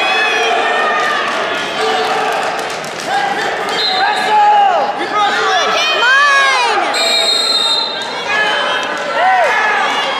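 Coaches and spectators shouting over a wrestling bout, with thumps on the mat. A referee's whistle sounds in a short blast just after four seconds in and a longer one about seven seconds in.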